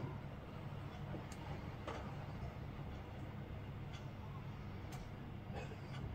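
Quiet room tone with a steady low hum and a few faint, brief clicks.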